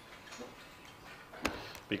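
Computer keyboard keystrokes: one sharp click about one and a half seconds in, with a fainter tick earlier.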